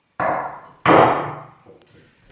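A hacksaw with a metal bow frame set down on a wooden workbench top: one sharp knock a little under a second in, dying away over about half a second.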